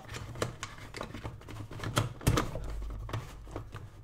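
Hollow plastic pieces of a giant 3x3 Rubik's cube, about 18 cm a side, clicking and knocking as hands shift and turn it, with a duller knock a little past two seconds in.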